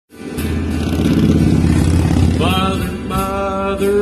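A live band plays, with a heavy low rumble under the first half. About halfway through, a man's voice starts singing held notes over the band.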